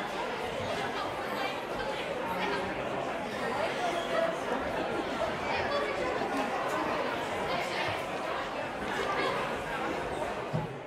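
Crowd chatter: many people talking at once in a large hall, a steady babble of overlapping voices.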